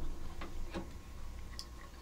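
A few faint, sharp clicks and ticks as a vinyl record on its holder is lifted out of the water of an ultrasonic cleaning bath.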